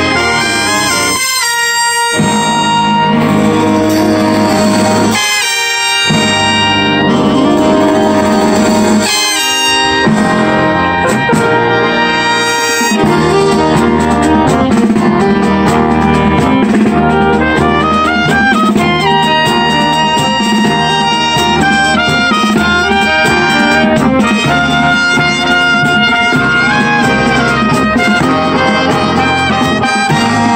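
Marching brass band of trumpets, saxophones, sousaphones and drums playing a medley. The low parts drop out briefly three times in the first dozen seconds, then the band plays on steadily.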